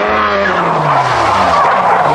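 A car drifting on the circuit: the engine note drops steadily while the tyres squeal and screech in a loud continuous slide.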